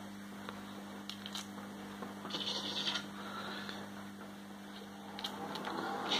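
Hands handling a pen laser pointer and tape, giving faint small clicks and a brief rustle a little over two seconds in, over a steady low electrical hum.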